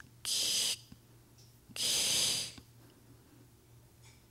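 Two breathy hisses voiced close into a microphone, a short one just after the start and a longer one near the middle: a storyteller's vocal imitation of an unseen creature's noise.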